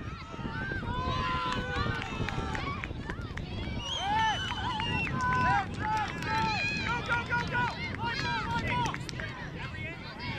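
Several people shouting at a soccer game, many raised calls overlapping.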